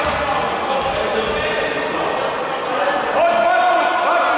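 Several voices talking and calling out, echoing in a sports hall, with a basketball bouncing on the gym floor. A voice holds one steady note near the end.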